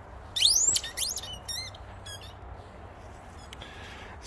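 Dog's squeaky toy squeaking as the dog chews it: a loud, fast rising squeak about half a second in, a second rising squeak, then a few shorter wavering squeaks.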